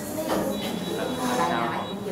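Background murmur of several people talking at once in a classroom, with a faint steady high-pitched whine from about half a second in.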